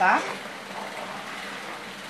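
A long wooden spoon stirring thick homemade cashew soap batter in a plastic bucket: a soft, steady wet swishing.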